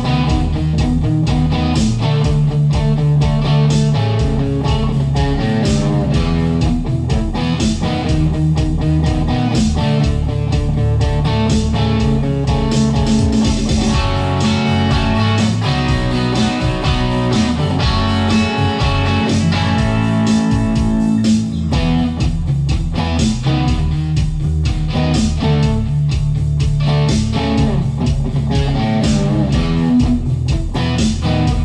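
Electric guitar playing a rock rhythm part over a backing of drums and bass generated by a Digitech Trio+ band-creator pedal, with a steady beat throughout.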